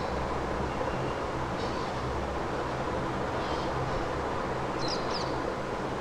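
Steady low background noise with a few faint, short, high bird chirps scattered through, the last pair about five seconds in.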